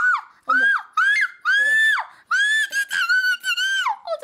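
A woman singing a short chant phrase at an extremely high pitch, a near-squeal at the top of her range, in several held notes that drop off sharply at each phrase end, the last and longest stepping slightly up and down.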